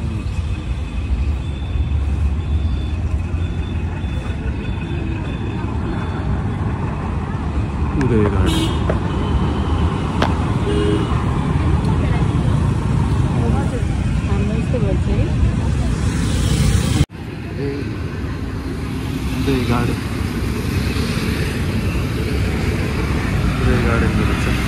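Indistinct voices of people talking nearby over a steady low rumble of background noise, with a brief cut-out in the sound about seventeen seconds in.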